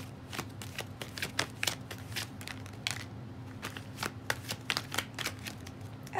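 Tarot cards being shuffled by hand: a quick, irregular run of card flicks and snaps, several a second.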